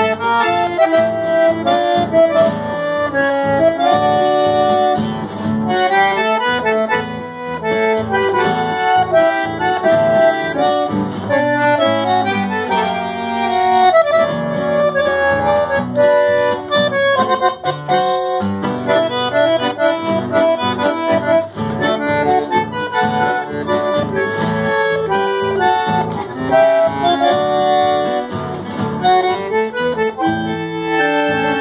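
A bandoneon plays a lively melody of sustained reedy notes, accompanied by a nylon-string acoustic guitar strumming rhythmic chords.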